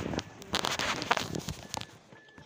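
Handling noise: rustling and a rapid run of crackling clicks as plastic trim, wiring and the camera are handled up close around a car's steering column.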